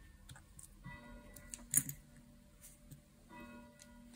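Church bells of the Marienkirche ringing faintly in the background, with strokes sounding about a second in and again near the end. A single sharp plastic click a little under two seconds in as LEGO minifigure parts are pressed together.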